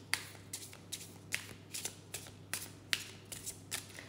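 A deck of oracle cards being shuffled by hand: a run of soft, quick card slaps, about two or three a second.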